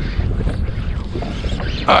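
Wind buffeting the microphone, a steady low rumble over the open water.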